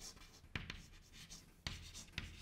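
Chalk writing on a chalkboard: faint scratching strokes, with a couple of short sharp taps as the chalk meets the board.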